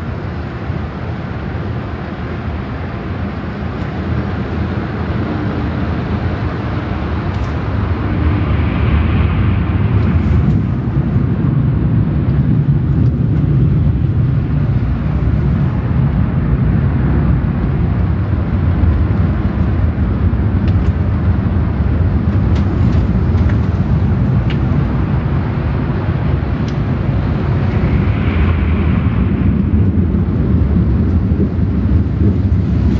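Automatic car wash tunnel machinery heard from inside the car: a steady, loud rumbling roar of the wash equipment, growing louder about eight seconds in and holding there.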